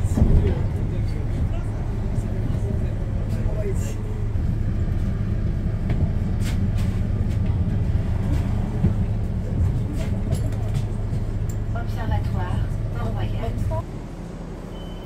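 Street traffic: a steady low rumble of engines and tyres, with passers-by talking, their voices clearest near the end. The rumble drops away suddenly just before the end.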